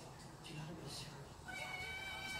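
A cat's long, steady, high-pitched meow that starts about one and a half seconds in and holds one pitch.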